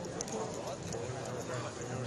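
Low room ambience from a poker tournament floor: a faint murmur of distant voices with scattered light clicks.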